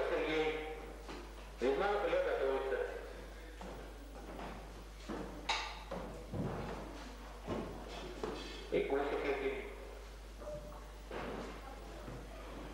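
Men's voices talking in a hall, and around the middle a few knocks and low thuds, typical of weight plates and collars being handled on a steel barbell.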